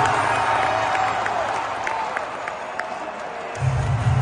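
Basketball arena crowd cheering and shouting, a dense wash of many voices with scattered whoops. A deep, loud low hum comes in near the end.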